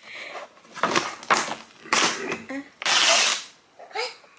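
The paper-and-plastic lid of a giant instant yakisoba tub being peeled back: several short crinkly rasps, then a longer, louder tearing rasp about three seconds in.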